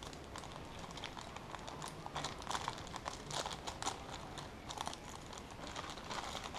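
A thin plastic bag crinkling as a camera neck strap is worked out of it by hand, in faint irregular bursts of crackles.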